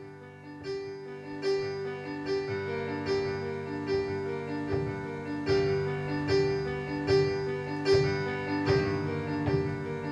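Electronic keyboard playing the opening of a song: a held low chord under a repeating pattern of notes, with a steady accent a little more than once a second that grows louder about a second in.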